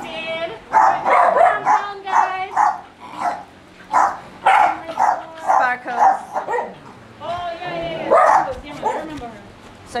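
Dogs and puppies vocalizing in a run of short pitched calls, mixed with people's voices.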